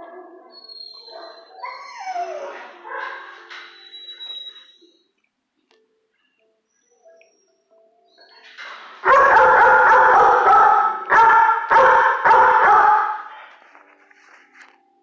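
A German shepherd-type dog whining, with a cry that slides down in pitch about two seconds in. After a few quiet seconds come louder, long howling whines, about four seconds of them in a few breaths.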